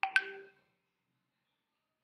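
A short electronic chime, a click and a few clear tones together, dying away within about half a second.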